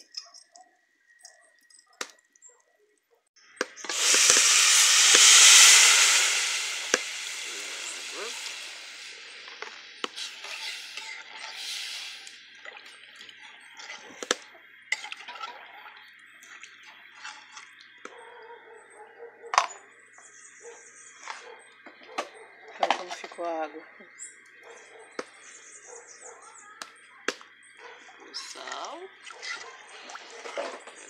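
Water poured into a metal pot of rice frying in pork lard: a loud hiss and sizzle starts about four seconds in and dies away over several seconds. Then come scattered clinks of a utensil stirring against the pot.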